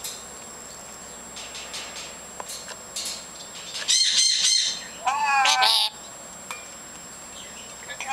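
Duyvenbode's lories chattering: soft scattered calls, then two loud, harsh calls about four and five seconds in, each lasting under a second.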